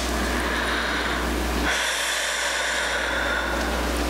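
Steady low electrical hum and hiss from the lectern microphone's sound system. About two seconds in, a breath-like rush into the microphone lasts roughly two seconds.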